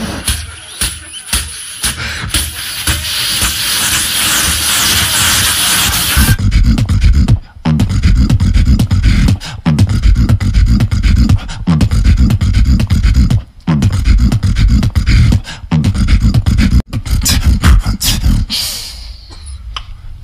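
Loud human beatboxing through a handheld microphone: sharp percussive clicks, then a long buzzing hiss that builds for a few seconds. After that come heavy deep bass sounds with downward-sliding pitch sweeps recurring about every two seconds, cutting out briefly a few times, and a run of quicker clicks near the end.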